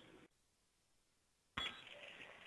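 Near silence, with a brief faint noise about one and a half seconds in.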